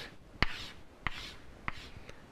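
Chalk drawing straight lines on a blackboard: three sharp taps as the chalk meets the board, each followed by a faint scraping stroke.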